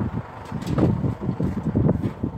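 Wind buffeting the phone's microphone, an uneven low rumble that swells and drops.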